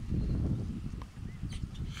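Low, steady rumbling of wind on the microphone, with a faint short chirp about a second and a quarter in.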